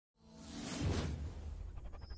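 Logo-intro whoosh effect that swells up out of silence, peaks about a second in and fades away, over a low steady music drone.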